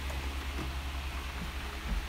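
A steady low rumbling hum with a faint even hiss, and a small click near the end.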